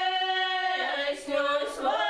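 Women's folk ensemble singing a cappella in parts, in Russian village style: a long held chord on a vowel, then the voices move together to new notes about a second in.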